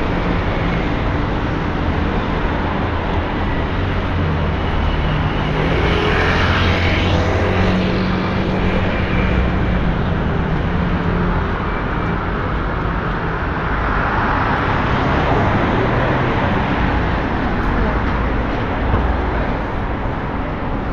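Road traffic on a city street: a steady wash of car engines and tyres, with vehicles passing by that swell about six seconds in and again around fourteen seconds in.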